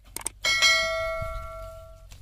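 A couple of quick mouse-click sounds, then a single bell strike that rings on and slowly fades before it is cut off abruptly near the end. It is the click-and-bell sound effect of a subscribe-button animation.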